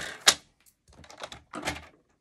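Sliding-blade paper trimmer cutting a sheet of patterned cardstock paper: a sharp click about a third of a second in, then a short scratchy run of clicks as the blade goes through the paper around the middle.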